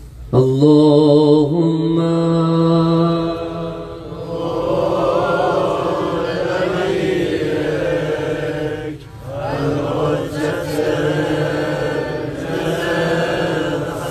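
A man's voice chanting a Shia Muharram mourning lament (rawzeh) in long, wavering held notes. There is a brief break about nine seconds in.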